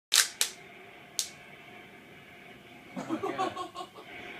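Three sharp clicks in the first second and a bit, the first two close together and the loudest sounds here. Then faint television sound, with a broadcast commentator's voice coming in about three seconds in.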